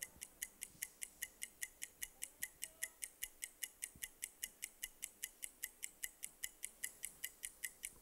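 Game-show countdown clock ticking steadily and quickly, about five faint, high ticks a second: the contestants' answer timer running down.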